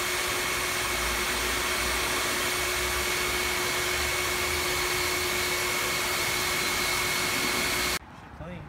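Steady, loud hiss of a self-serve car wash's high-pressure spray wand, with a faint steady whine under it, cutting off suddenly at the end.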